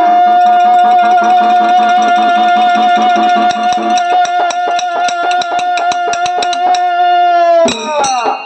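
A wind instrument holds one steady note with a slight waver, over a lower second note. About three and a half seconds in, quick metallic clinks join it at about five a second. Both stop suddenly just before the end.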